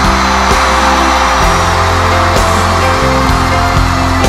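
A live concert band plays an instrumental passage of a pop song with no vocals: sustained chords over a bass line, punctuated by a few drum hits.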